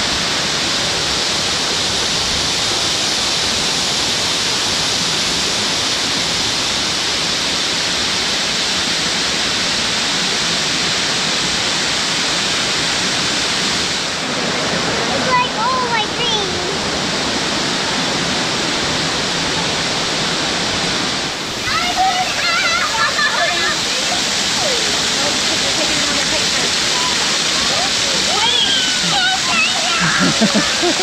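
Steady, loud rush of a waterfall cascading over rock ledges, heard close to the falling water.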